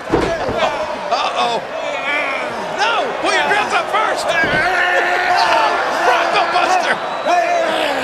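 Wrestling ring thud as a wrestler is knocked down onto the canvas just after the start, with a second, softer thud midway. Men's voices run throughout.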